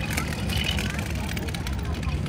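Steady low engine rumble of a cruise boat under background voices of people on board.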